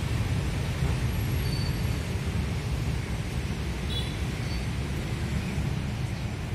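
A steady low rumble with a faint hiss over it, with no clear events or rhythm.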